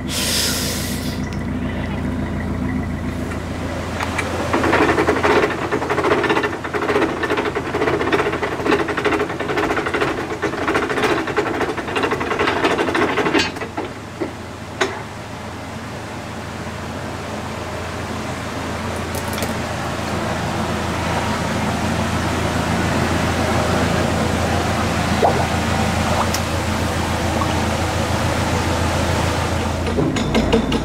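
Narrowboat's Beta Marine diesel engine running steadily with a low throb. Around the middle the sound drops in level, then slowly grows louder again.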